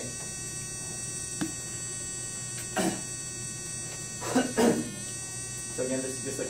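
Steady electrical hum with a thin high whine, broken by a single click about a second and a half in and a brief voice sound a little past the middle.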